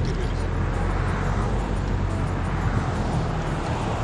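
Steady drone of a car heard from inside its cabin: engine hum and road noise.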